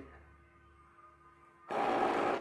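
Mostly quiet, then near the end a short burst of noise, under a second long, from an automatic soap dispenser as its sensor-triggered pump pushes out a dose of soap onto a hand.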